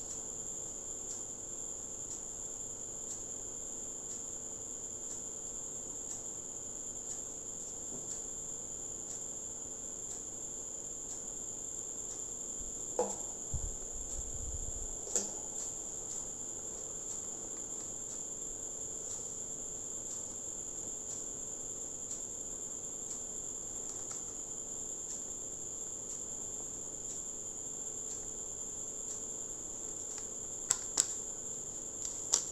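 A steady high-pitched drone with faint ticks about once a second. About halfway through come a couple of clicks and a short low thud as objects are set down on a desk.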